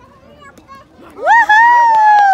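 A loud, high-pitched yell starts about a second in and is held as one long cry, slowly falling in pitch, like a cheer from someone close by.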